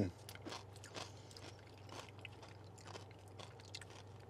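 Close-miked chewing of tortilla chips with dip: irregular small crunches and mouth clicks.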